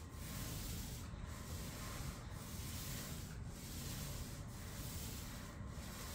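A paint roller on an extension pole rolling paint across a ceiling with a steady rubbing sound. It makes back-and-forth strokes, with a brief break at each reversal about once a second.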